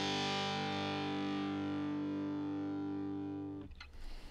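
Intro music: a single distorted guitar chord left to ring out, slowly fading and cut off about three and a half seconds in.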